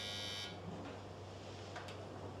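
A short buzz lasting about half a second at the start, over a low, steady room hum.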